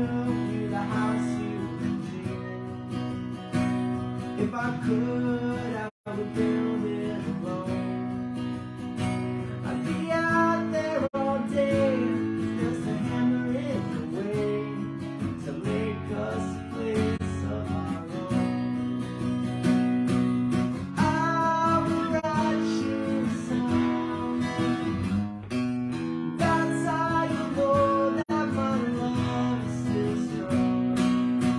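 Acoustic guitar strummed in a steady rhythm, with a man singing over it in stretches. The sound cuts out for an instant about six seconds in.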